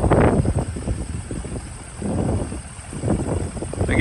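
A 2012 Ford F-550's 6.7-litre Power Stroke turbo-diesel V8 running just after a cold-weather start. It is loudest in the first second, then eases into an uneven idle.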